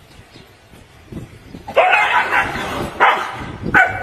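A dog barking three times, starting a little under halfway in, the first bark the longest.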